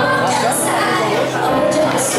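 A woman singing into a microphone with live keyboard accompaniment, her voice bending between notes over steady held chords.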